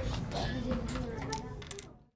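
Small coloured math tiles clicking against each other and the wooden tabletop as children move and set them down: several light, separate clicks, with quiet children's voices underneath. The sound cuts off just before the end.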